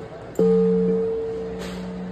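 Large frosted quartz crystal singing bowl struck once about half a second in, then ringing on with a steady low hum and a higher tone above it, slowly fading.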